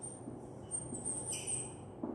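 Whiteboard marker squeaking against the board while writing, in a few short high-pitched strokes, the longest about a second in.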